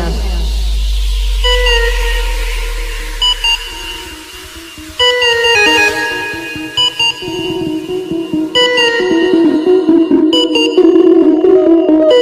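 Background music: an electronic track of plucked notes with echo repeats. A deep bass drone under the opening fades out about four seconds in, and the notes grow busier and louder over the second half.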